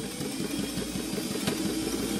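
Older domestic sewing machine running steadily, stitching a seam through thick quilted layers: an even motor hum under rapid, regular needle strokes.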